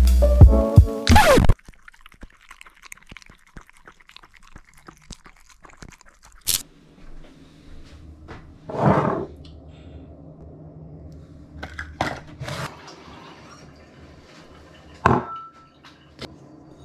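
Background music with drums that cuts off about a second and a half in, followed by quiet kitchen handling sounds: scattered small clicks, a brief rushing sound near the middle, and a few sharp knocks of things being set down on a worktop.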